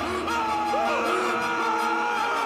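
Men screaming together in horror, long held yells that slide and waver in pitch, over dramatic music.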